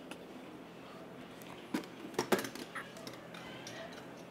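A quick run of sharp clicks and knocks about two seconds in, with the loudest near the middle: handling noise from the phone and small plastic toys being moved.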